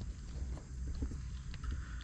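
Low steady rumble of wind on the microphone, with a few faint ticks.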